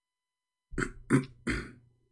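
A person coughing three times in quick succession, each cough a short harsh burst.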